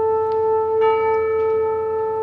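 Band music with sustained wind notes: one steady note held throughout, joined by a second, brighter held note about a second in.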